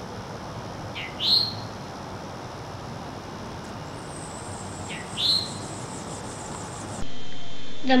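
Chickadees at a nest box: two short rising chirps, about four seconds apart. Once a parent has gone into the box, the faint, thin, very high calls of the nestlings come from inside.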